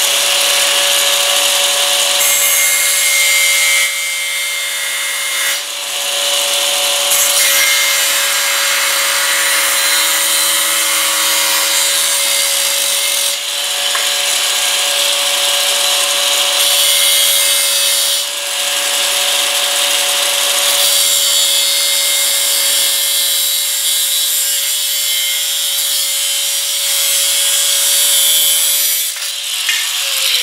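Makita angle grinder with a thin cut-off wheel cutting through steel angle: the motor holds a steady whine while the grinding hiss of the wheel in the metal swells and eases several times as the cut goes on.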